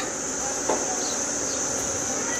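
A steady, high-pitched insect drone, like crickets or cicadas chirring, with a faint light tap about two-thirds of a second in as a plastic queen cup is dipped into a lid of wood glue.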